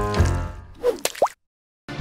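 A short musical sting fading out, followed about a second in by a cartoon plop sound effect with a quick rising pitch.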